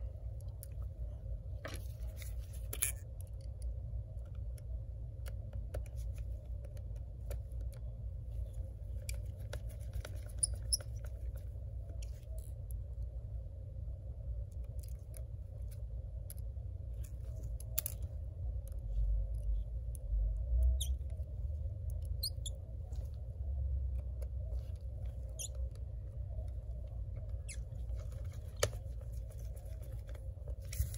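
Faint, scattered small clicks and scratches of a precision screwdriver and gloved fingers working tiny screws into a laptop's display-controller bracket, over a steady low hum.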